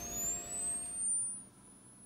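Electronic camera flash recharging: a thin, high whine that rises in pitch and then levels off.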